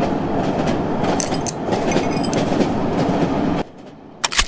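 Train running on the rails: a steady rumbling clickety-clack that cuts off suddenly about three and a half seconds in.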